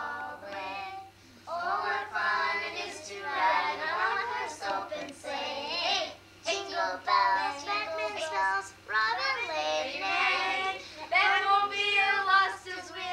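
A child singing, with a woman's voice in places, in phrases broken by short pauses, over a low steady hum.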